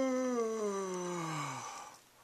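A voice holding one long, drawn-out moan that slides steadily down in pitch and fades out near the end.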